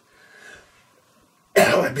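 A man's single short cough near the end, after a faint soft breath about half a second in.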